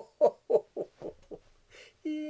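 A man laughing deliberately, as in laughter yoga: a run of about six short, falling 'ho' syllables at roughly four a second, growing softer and trailing off.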